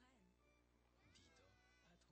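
Near silence, with only very faint sounds barely above the background hiss.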